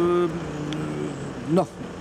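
Speech only: a man's voice holds one drawn-out hesitation sound for about a second, then says a short "no".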